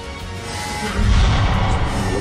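Tense documentary music builds, then about a second in a deep boom as the NASA Ames Vertical Gun Range fires a small projectile at hypervelocity (about 5 km/s) into a model asteroid. A rumble carries on under the music.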